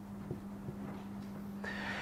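Whiteboard marker drawing short lines on a whiteboard, faint, with a couple of light taps and a thin squeak near the end, over a steady low room hum.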